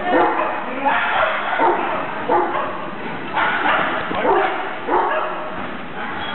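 A dog barking over and over, a short bark roughly every half-second to second.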